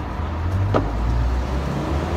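Low, steady rumble of motor traffic, with a single brief click about a third of the way in.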